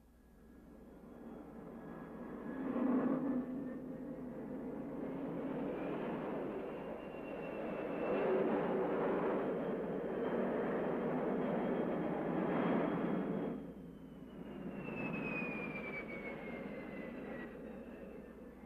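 Lockheed F-104 Starfighter's General Electric J79 turbojet running up on the ground: a steady rushing roar with a high whine that climbs in pitch as the sound builds. About fourteen seconds in it drops off briefly, then returns with a whine slowly falling in pitch.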